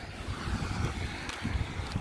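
Wind buffeting the phone's microphone, with the hiss of car traffic on the road swelling slightly.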